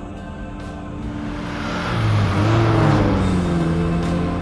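Tense dramatic background music with held tones, swelling to its loudest about three seconds in, over the rushing noise of a car on the road.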